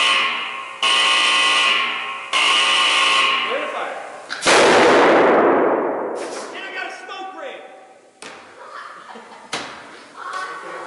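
A warning tone sounds three times, then about four and a half seconds in a capacitor bank dumps 1,800 volts at 80,000 amps through a piece of aluminum with a single very loud bang that rings out for about two seconds. The aluminum is vaporized by the discharge.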